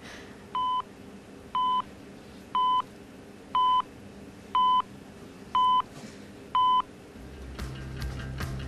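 Quiz-show answer timer counting down the contestant's 10 seconds: seven short, identical electronic beeps, one each second, over a faint steady background. A low drone comes in about seven seconds in.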